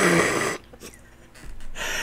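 A man's breathy laugh, a short burst of air about half a second long, then quiet, then a sharp intake of breath near the end.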